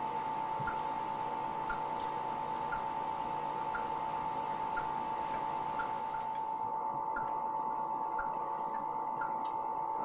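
Electronic hospital equipment in a room: a steady high tone, with a short faint beep about once a second. A background hiss drops away about two-thirds of the way through.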